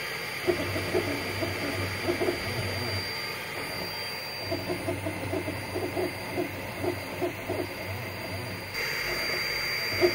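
3D printer at work, its stepper motors giving runs of short pitched tones as the print head moves, over a steady low hum and a faint high whine from the machine.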